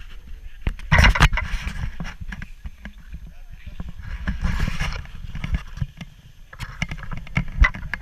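Wind rumbling unevenly on an action camera's microphone, with rustling of jacket fabric against the camera, loudest about a second in and around four and a half seconds.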